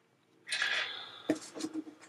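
Paper being handled at a desk: a short rustle about half a second in, then a few light taps and clicks.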